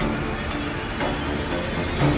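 Steady background hum and hiss, with faint ticks about half a second and a second in.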